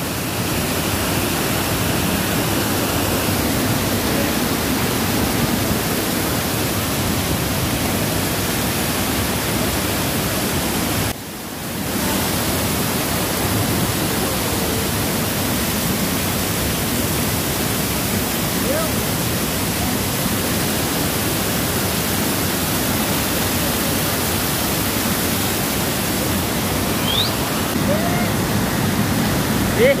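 Steady rushing of a waterfall, an even unbroken roar of falling water, dropping away for a moment about eleven seconds in.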